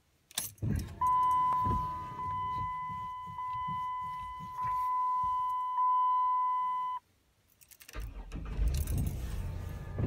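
Keys jangling as the ignition key of a 2007 Dodge Grand Caravan is worked against a locked steering wheel, then a steady high electronic warning tone from the dash for about six seconds, stepping louder a few times before it cuts off suddenly. Near the end a low rumble builds as the engine turns over.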